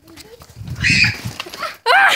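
A small white curly-coated dog makes a short breathy noise lasting about half a second, midway through. A person's voice starts just before the end.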